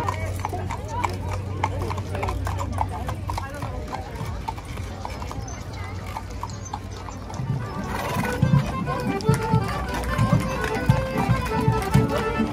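Hooves of carriage horses clip-clopping on asphalt as horse-drawn carriages pass, the strikes growing louder about two-thirds of the way in. Crowd voices and music are also heard.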